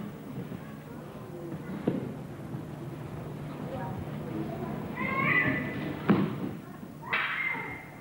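Aikido throws and falls on the mat: sharp thuds about two and six seconds in, the second the loudest, and two loud kiai shouts about five and seven seconds in.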